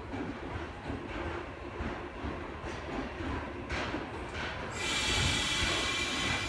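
JR 115 series electric train pulling slowly out with a low rumble and a few faint wheel clicks. Near the end a high squeal with hiss sets in suddenly, typical of wheels grinding through a curve or points.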